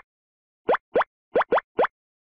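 A cartoon pop sound effect for map pins popping into place: five quick blips, each sliding up in pitch, starting about two-thirds of a second in, the later ones close together.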